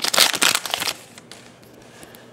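Foil wrapper of a football trading-card pack crinkling loudly as it is pulled open by hand, stopping about a second in.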